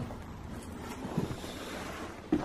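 Rustling and handling noise as a cardboard box with crumpled packing paper is touched, with a couple of soft knocks about the middle.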